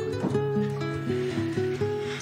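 Background score: a plucked acoustic guitar playing a gentle melody of short, ringing notes.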